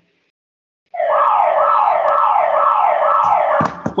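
A loud siren-like wail: a falling sweep repeated about five times, roughly twice a second. It starts about a second in and cuts off suddenly just before the end, followed by a couple of clicks.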